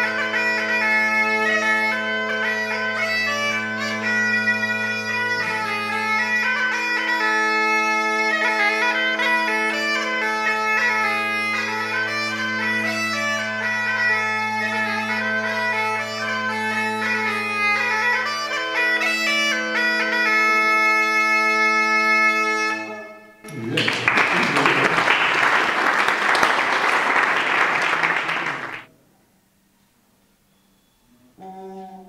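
Galician gaita (bagpipe) playing a tune: a melody on the chanter over a steady drone, the multitone drone (bordón multitono) that lets the pipe be set to different keys. The tune ends about 23 seconds in, followed by about five seconds of applause.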